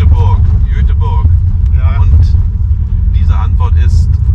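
Steady low rumble of a car driving, heard from inside the cabin, with short bursts of voices and laughter over it.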